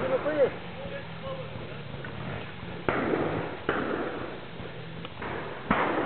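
Trials motorcycle engine running low, then four sudden, sharp bursts of throttle, about three seconds in, just before four, just past five and near the end, as the bike is ridden up over a log step.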